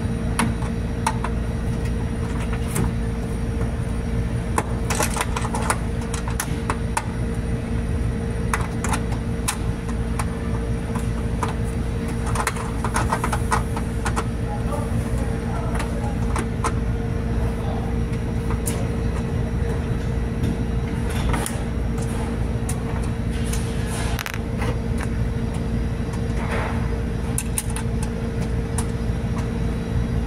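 Machinery running with a steady hum made of several constant tones and a strong low rumble, with scattered light clicks and knocks over it.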